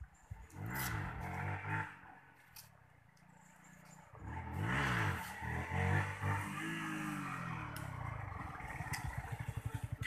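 Bajaj Pulsar NS200's single-cylinder engine revving as the motorcycle rides up toward the listener, its pitch rising and falling with throttle and gear changes. It is loudest about five to six seconds in, then settles into a steady pulsing beat near the end.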